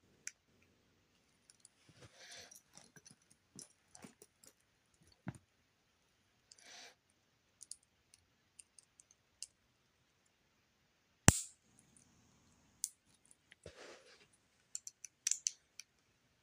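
Knock-off LEGO-style plastic bricks clicking and rattling as hands sort through a loose pile and press pieces together, with scattered small clicks and one much louder sharp click about eleven seconds in.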